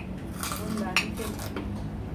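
Metal spoons scraping and clinking against ceramic plates of rice, with one sharp clink about halfway through.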